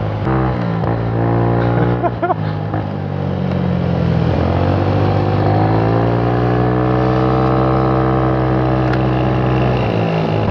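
Four-stroke scooter engine running under way. Its note falls about four seconds in, then climbs and holds steady.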